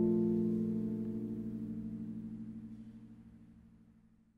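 Closing chord on a harp left to ring, its strings dying away steadily with a slight wavering pulse until they fade out.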